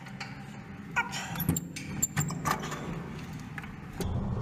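Metal clinks and knocks of climbing hardware on a steel ladder with a fall-arrest rail: harness carabiners and lanyard rattling against the rungs and rail. A handful of sharp knocks and jingling clinks come about a second in and through the middle.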